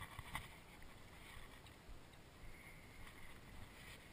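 Near silence: faint outdoor background with a low rumble, and one light click just after the start.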